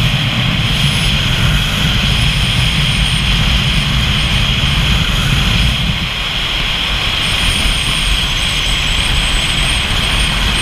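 Steady wind rush and road noise on a camera mounted on a vehicle travelling at road speed. The low rumble eases about six seconds in, and a faint high whine comes and goes on top.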